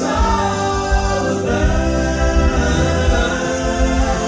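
Male southern gospel trio singing in harmony, with long held notes through the second half.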